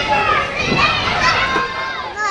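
Many children's voices talking and calling out at once: the busy chatter of children at play.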